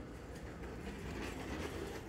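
Low steady rumble of store background noise, with a few faint clicks.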